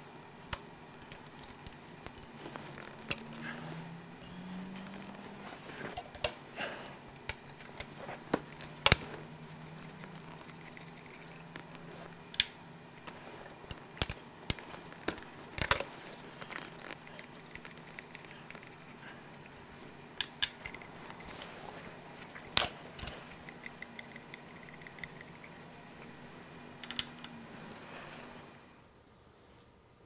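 Metal hand tools clinking and clicking against the engine's metal fittings as the injector and glow plug connections are worked loose: irregular sharp clicks, with a faint low hum underneath.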